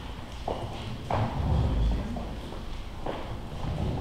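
Footsteps of shoes on a hardwood floor, a few separate hard knocks, with a louder low bump near the middle as a bar stool is handled and sat on.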